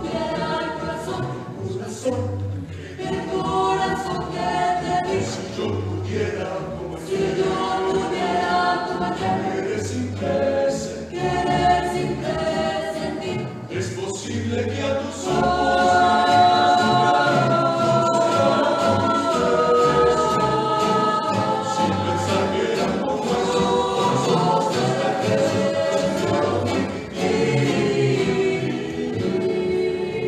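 A rondalla performing: a mixed choir singing in harmony over strummed guitars and a plucked double bass. About halfway through the voices move into long, held notes and the music gets louder.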